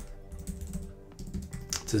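A few keystrokes on a computer keyboard, over faint steady background music.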